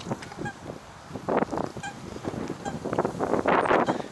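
Geese honking: a few short, separate calls over the sound of open air.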